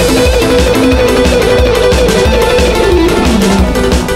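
Electric guitar playing a fast, evenly alternate-picked repeating note figure on a single string at 180 BPM, with a steady low beat underneath.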